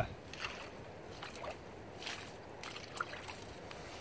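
Faint, scattered sloshing and small splashes of shallow marsh water around a submerged wire trap, with a few light short rustles.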